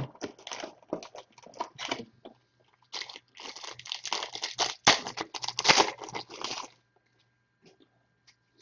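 A sharp knock, then a foil trading-card pack wrapper crinkling and crackling as it is handled and torn open. It is busiest and loudest over the last few seconds before it stops.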